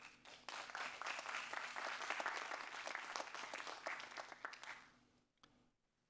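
Audience applauding, a dense patter of many hands clapping that begins just after the start and dies away about five seconds in.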